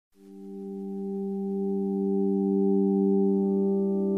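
Sonicware Liven XFM FM synthesizer playing a slow, calm pad: a chord of steady held tones that fades in from silence over about two seconds, with a higher note joining near the end.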